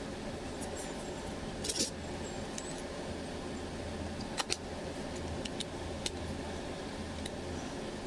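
A few light, scattered clicks and taps from a plastic-bodied smartphone being handled and fitted back together, over a steady low hum.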